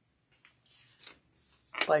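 Scissors cutting the clear packing tape on a padded paper mailer: a few faint snips with paper rustling.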